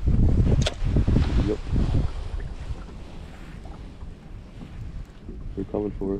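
Wind rumbling on the microphone, strongest in the first two seconds and then easing, with one sharp click a little under a second in.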